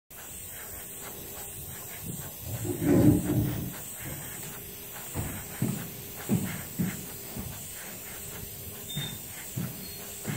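Gravity-feed airbrush hissing steadily as it sprays white paint onto a plastic RC car body. A louder low noise comes about three seconds in, and a few short, softer low sounds follow later.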